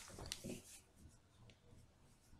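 Near silence, with a faint click and a short faint rustle in the first second.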